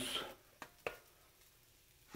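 Two faint ticks about a quarter second apart as au jus gravy mix is shaken from its paper packet into a steel pot of hot water.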